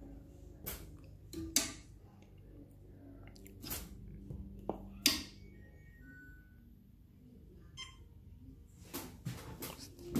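A few sharp knocks and clicks, the loudest about a second and a half and five seconds in, over a faint steady low hum.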